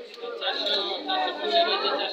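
People talking in the background: overlapping chatter of voices.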